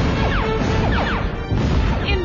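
Cartoon sci-fi ray-gun blasts, falling zaps coming two or three times a second, over loud crashing and rumbling destruction.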